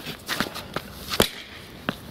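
A hammer knocking on the metal remains of a parking-blocker post set in the paving. About four separate sharp knocks, the loudest a little past a second in, the last one ringing briefly.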